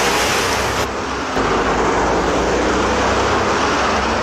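Car driving hard: a loud, steady rush of engine and road noise, with no music under it.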